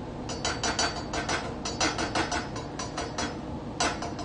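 A serving utensil clinking and knocking against a pot and bowl as soup is dished out: a quick run of about twenty sharp clinks, five or six a second, then one more near the end.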